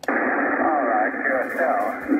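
Icom IC-745 HF transceiver on receive, its speaker playing a distant amateur station's single-sideband voice on 20 m. The voice is thin and narrow over steady band hiss, and cuts in suddenly as the set switches from transmit to receive.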